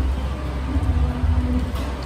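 A steady low rumble with faint background music over it.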